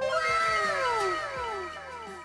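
Edited-in sound effect: a cascade of many overlapping falling tones that starts suddenly and fades out over about two seconds.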